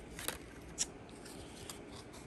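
Plastic blister packs of eyeliner being handled, giving a few short crinkling clicks in the first second.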